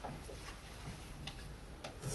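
Quiet room tone with a few faint, irregular clicks.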